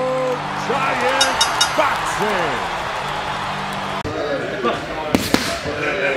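Voiced intro jingle with music, broken off suddenly about four seconds in by boxing-gym sound: boxing gloves smacking into focus mitts, two sharp punches in quick succession, over voices in the room.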